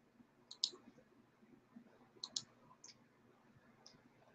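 Faint computer mouse clicks: a quick pair about half a second in, another pair a little after two seconds, then two single clicks.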